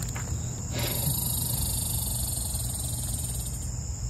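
Insects trilling in a steady, high-pitched drone, with a second, even higher-pitched insect joining about a second in and stopping near the end, over a low steady rumble.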